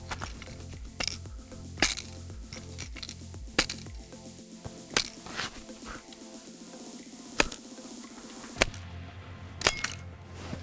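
Steel blade of a folding tactical shovel chopping into a wet stick of wood: about seven sharp strikes at irregular intervals, over background music.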